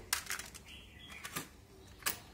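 A few sharp mechanical clicks from a hand working the front-panel controls and cassette well of a Nakamichi ZX-7 cassette deck: two close together near the start and another about a second and a half in.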